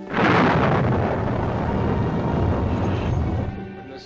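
A loud thunderclap: a sudden crack that rolls on as rumbling for about three seconds, then fades.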